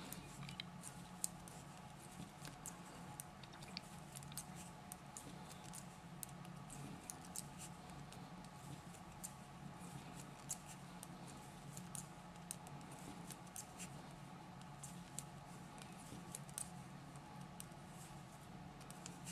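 Knitting needles clicking faintly and irregularly as stitches are worked, over a steady low hum.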